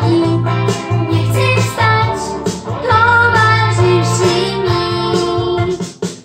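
A boy singing a song in Polish over backing music, his voice wavering up and down on held notes; the sound dips briefly at the very end.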